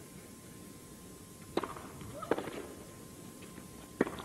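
Two sharp tennis ball strikes less than a second apart: a serve struck with a racket, then the return off the other racket.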